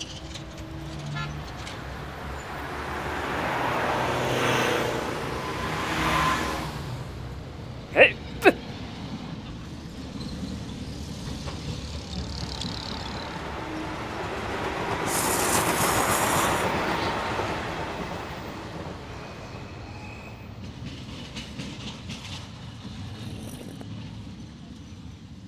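Train sounds: a train passes twice, each time growing louder and then fading. Two short, very loud sharp sounds come half a second apart between the passes.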